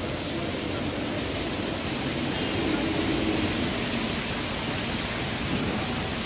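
Heavy rain falling steadily on a city street, an even hiss, with traffic passing on the wet road.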